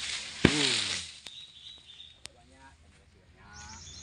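A sharp click, then a short, loud call that falls in pitch over about half a second, over a rustling hiss that fades within a second. Faint voices and a couple of light clicks follow.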